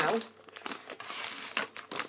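Snack-wafer packaging crinkling and rustling irregularly as it is handled and moved on a counter.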